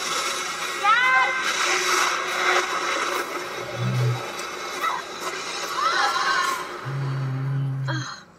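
Animated-film trailer soundtrack played through a laptop's speakers: music with a few short gliding sound effects, one about a second in and another near six seconds, and a low bass note near the end.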